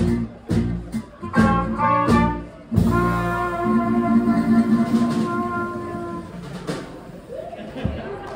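Jazz quintet of clarinet, trumpet, guitar, upright bass and drums playing the closing bars of a song with a few sharp accents, then hitting a long final chord that is held for about three seconds and fades out.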